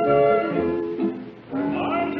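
Radio studio orchestra playing a short musical bridge between scenes. A held chord fades away about a second and a half in, and a new sustained chord starts.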